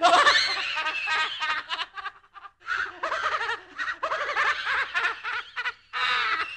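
Spooky horror-style laugh sound effect: a person laughing in quick, choppy pulses, in two long bursts with a short break about two seconds in.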